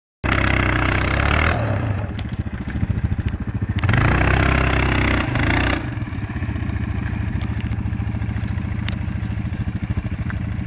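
Quad bike (ATV) engine working under load as it hauls a trailer over a dirt mound: two loud bursts of high revs in the first six seconds, then lower, steady running with an even beat of firing strokes.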